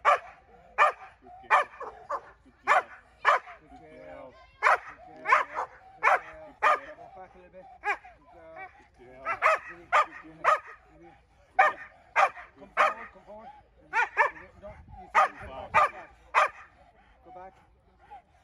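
A Belgian Malinois barking repeatedly and hard at a decoy in protection training, sharp barks about one or two a second in short runs with brief pauses between.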